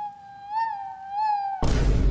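A ghost girl's long, high-pitched moaning wail from a film clip, held on one wavering note. About a second and a half in it is cut off by a sudden loud, distorted blast of noise with heavy bass.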